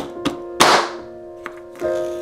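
Clear plastic shrink-wrap on a new stretched canvas being poked and torn open with the end of a paintbrush: a couple of light taps, then one loud crackling tear of the film just over half a second in. Instrumental background music with sustained notes plays throughout.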